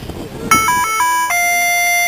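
An electronic beeper plays a short chime, starting about half a second in: four quick notes stepping up and down in pitch, then one long lower note held steady.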